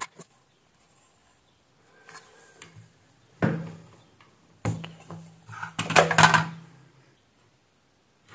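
Sheet-metal cover of a switch-mode power supply being lifted off and handled: a faint scrape, then two sudden knocks and a louder rattling clatter of metal about six seconds in.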